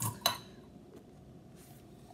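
A spoon clinks twice against a cup, about a quarter second apart, right at the start. Then faint room tone.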